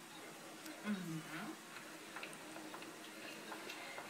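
Quiet room tone with a short, low murmured vocal sound about a second in, its pitch dipping and rising, and a few faint scattered ticks.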